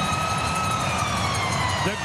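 Arena goal horn sounding one long, steady tone over crowd noise after a goal, its pitch sagging slightly near the end.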